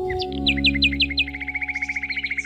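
Canary song: a run of about six quick downward-sweeping whistled notes, then a fast rolling trill, over a held musical chord.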